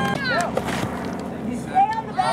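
Spectators' voices: talk in the first half second, then a loud rising shout near the end.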